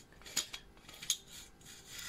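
Threaded metal sections of a small homemade jet engine being unscrewed by hand: a faint rubbing scrape of metal on metal, with two light clicks about half a second and a second in.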